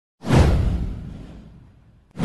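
A whoosh sound effect with a deep low boom under it, starting suddenly, falling in pitch and fading away over about a second and a half.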